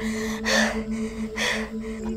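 Two sharp, breathy gasps close to the microphone, about a second apart, over a steady low hum.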